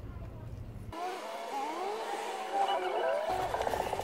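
A vehicle engine, its pitch rising and falling several times as it revs, starting about a second in, with a buzzy tone near the end.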